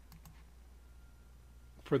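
A few faint computer mouse clicks in quick succession near the start.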